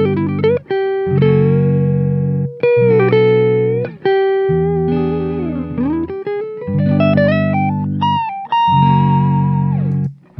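Electric guitar through a Supro amp. A looped part of low sustained chords recurs about every two seconds, and a live lead line of single notes with string bends plays over it.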